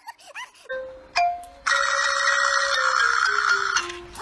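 An added electronic ringtone-like tone that steps down in pitch note by note over a loud hiss, stopping abruptly near the end. It is preceded by a short higher beep.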